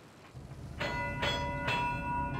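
A ship's engine-order telegraph bell rings three times, about half a second apart, each strike leaving a ringing tone. Under it runs a low steady rumble that starts just before the first ring.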